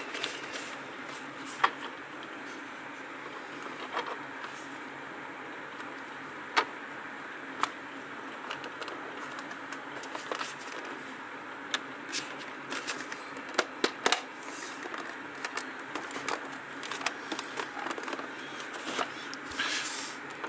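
Scattered small clicks and taps of hard plastic parts being handled as a circuit board is seated back in a small plastic instrument case and the case is pressed shut, over a steady background hiss.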